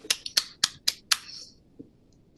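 One person applauding with a quick run of about five sharp strokes, roughly four a second, stopping after about a second and a half.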